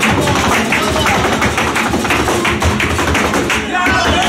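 Flamenco zapateado: rapid, dense strikes of a dancer's heels and toes on a wooden stage, over flamenco guitar accompaniment.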